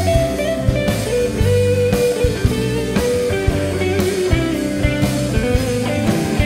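Live band playing: a drum kit keeps a steady beat under bass, guitars and keyboard, with a sustained lead melody that bends and glides in pitch.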